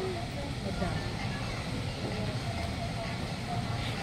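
Background of faint distant voices over a steady low rumble.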